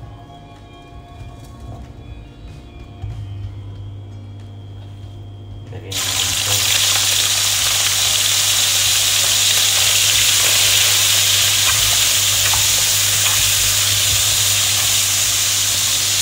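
Sliced bacon sizzling in hot oil in a wok. The loud, steady frying hiss starts suddenly about six seconds in, as the bacon hits the oil; before that there is only faint music.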